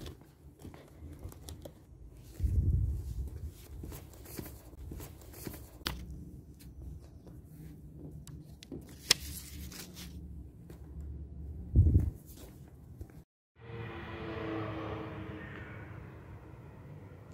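Handheld phone picking up street noise at night: scattered clicks and light paper handling, with two short loud rumbles from the phone being handled. After a brief cut-out near the end, a steady hum begins.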